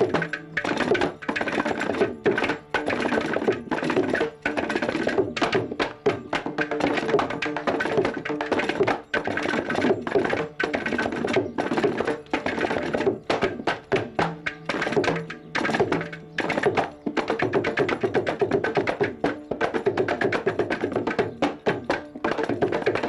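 South Indian percussion ensemble of mridangam, kanjira and ghatam playing a fast, dense interlocking rhythm in Adi talam, the eight-beat cycle, with the mridangam's tuned strokes ringing under the slaps of the frame drum and clay pot.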